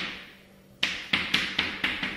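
Chalk tapping and scraping on a blackboard while writing: a quick run of five sharp taps in the second half, about four a second.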